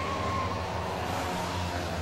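Air-cooled flat-twin engines of Citroën 2CV racing cars running on the circuit, a steady low drone.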